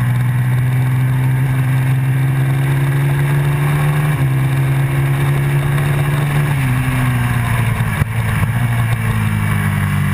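Motorcycle engine heard from on board under hard acceleration, its pitch climbing steadily, dropping abruptly about four seconds in as it shifts up, then climbing again until it drops and stays lower about two and a half seconds later as the rider rolls off for a corner. A brief knock comes about eight seconds in.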